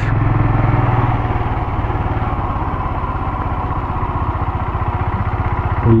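Royal Enfield Himalayan's 411 cc single-cylinder engine running steadily while the motorcycle is ridden along the road.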